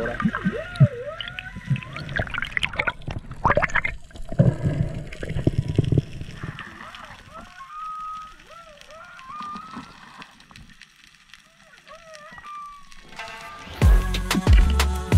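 Humpback whale song heard underwater: a series of sweeping calls that rise and fall in pitch, clearest in the second half. In the first few seconds water sloshes and bubbles around the microphone.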